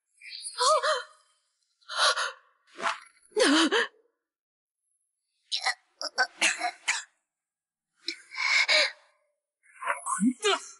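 A series of short wordless vocal sounds from cartoon voice actors (gasps, grunts and cries) in about six separate bursts, with dead silence between them.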